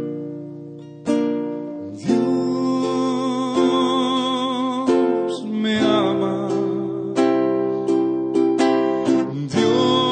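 A worship song on strummed acoustic guitar, with new chords struck about once a second and a voice singing over them.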